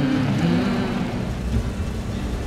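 A car driving: steady, even road and engine noise.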